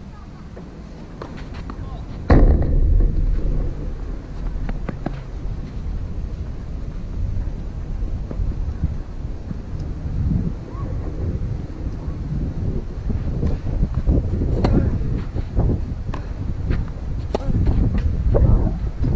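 Wind buffeting an outdoor microphone: a low, gusty rumble that comes in suddenly a couple of seconds in and keeps rising and falling.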